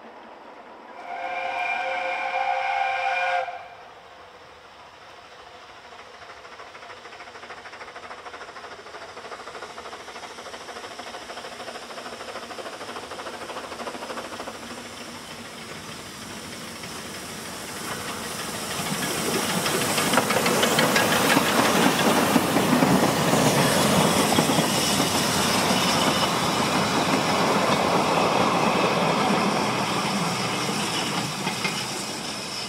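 Narrow-gauge steam locomotive: one whistle blast of about two and a half seconds near the start, then the engine's steam exhaust and hiss build up as it works a train past, loudest through the second half.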